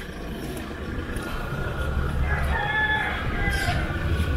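A rooster crowing once, one drawn-out call of about a second and a half starting a little past halfway, over a low rumble of wind on the microphone.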